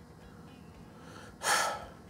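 A man's quick audible in-breath, about half a second long, coming about one and a half seconds in after a stretch of quiet room tone.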